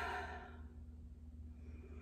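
A woman's slow breath out, a soft sigh that fades within the first half second, then a fainter breath near the end, as part of a paced deep-breathing exercise.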